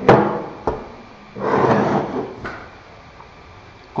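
An aluminium dowelling jig and its parts are handled on a hard work surface: a sharp knock, a small click, then about a second of sliding, scraping noise and a last faint click.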